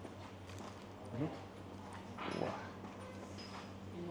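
A person eating, chewing with small clicky mouth and utensil sounds and murmuring 'mm-hmm' at the taste, over a steady low hum.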